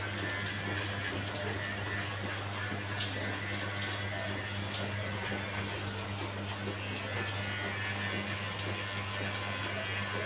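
Cordless hair clipper running steadily while it buzzes a short cut, under background music.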